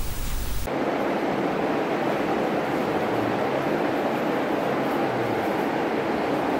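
Steady rushing background noise with no rhythm or pitch, starting abruptly just under a second in and holding at one level.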